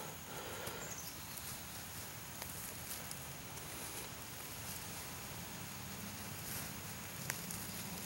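Faint rustling and pattering of loose, sandy soil being pushed and sprinkled by hand into a small hole to cover a planted acorn, with a few light ticks.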